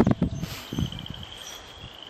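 A steady high-pitched insect trill runs throughout. Low rumbling thumps in the first half second are the loudest part.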